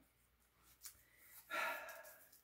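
A man's short, breathy exhale, like a sigh, in the last half second, after a faint click or two.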